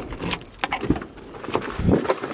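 Bunch of keys jangling and clicking against a car door while it is unlocked, then the door latch clicks open near the end.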